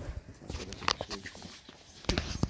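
A few sharp metallic clicks and knocks from the missile trolley's hoist gear being worked by hand, the sharpest a little under a second in.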